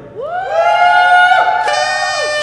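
A few audience members whooping and shouting in reply, several voices rising in pitch and holding long calls over one another for about a second and a half.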